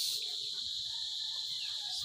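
Insects in garden vegetation keep up a continuous high-pitched trill that holds steady throughout.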